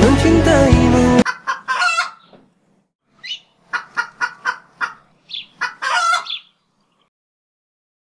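Background music cuts off suddenly about a second in, followed by short, high clucking calls in several quick runs, which stop past the middle.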